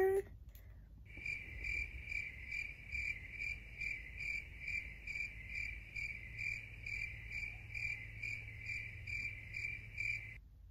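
Cricket-chirping sound effect: an even, rapid run of high chirps, about two a second, that starts abruptly about a second in and holds steady throughout, the comedy 'crickets' gag marking an awkward silence while no answer comes.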